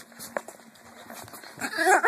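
Dogs playing together on a bed. Near the end one dog gives a short, high-pitched vocalisation in several quick rising-and-falling pulses, after a single click about a third of a second in.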